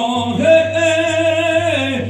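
A man's voice singing one long held note, unaccompanied, that slides down in pitch near the end.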